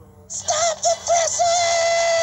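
Music from a videotape trailer: a high singing voice comes in about a third of a second in, with a few short notes and then one long held note.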